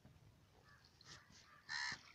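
A single short, loud call near the end, harsh and bird-like, with a fainter call about a second in.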